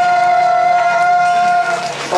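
A singer holding one long, steady note into a microphone over backing music, the note ending shortly before the end.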